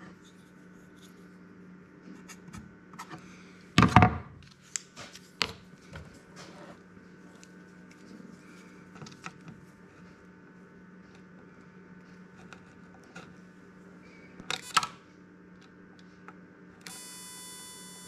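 Clicks and knocks of a xenon headlight ballast and test probes being handled on a wooden workbench, over a faint steady hum. Near the end the ballast fires the xenon bulb and a high-pitched whine sets in and holds, the whine that shows the ballast is working.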